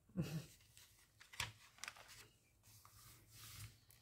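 Magazine page being turned by hand: faint paper rustling with a crisp flick about a second and a half in, and a longer rustle near the end.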